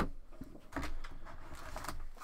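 Trading cards and a foil card pack being handled: a sharp click at the start and another about half a second in, then about a second of a low humming tone over soft handling noise.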